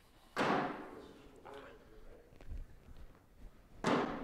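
Two cornhole bags landing on a wooden cornhole board, each a loud thud that rings on in the large, echoing hall. They come about three and a half seconds apart, one shortly after the start and one near the end.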